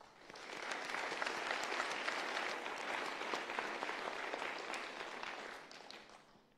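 A large audience applauding, building up within about the first second, holding steady, then dying away near the end.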